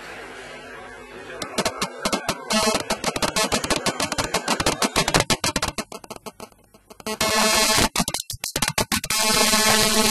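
Music with a fast electronic beat, dropping out briefly past the middle before starting again.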